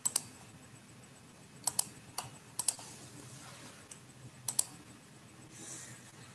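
Computer keyboard keys being tapped: about ten scattered, sharp clicks, several in quick pairs, picked up by an open microphone on a video call while someone works to share the slides.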